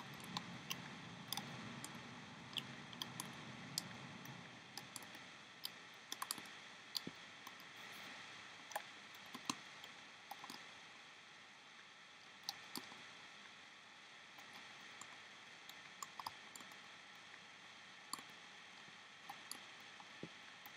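Scattered light clicks and taps of a metal loom hook against the plastic pegs of a Rainbow Loom as rubber bands are looped up, irregularly spaced, over a faint steady hiss.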